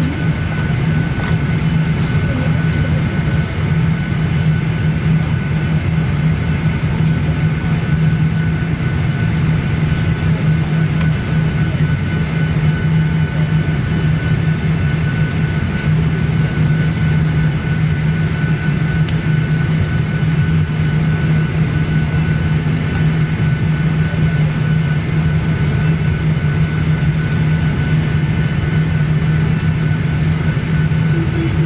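Steady cabin noise inside a Boeing 737-800 on the ground before takeoff: a constant low hum with a thin steady whine above it and an even rush of air.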